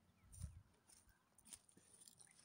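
Near silence outdoors, with a few faint soft thumps and clicks.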